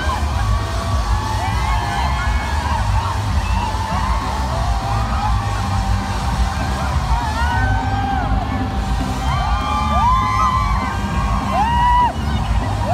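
Live concert music with a heavy, steady bass, under many fans screaming and whooping close by. The cries grow thicker and louder towards the end.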